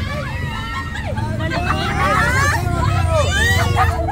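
Several voices talking and calling out over one another, with a steady low rumble of street traffic underneath.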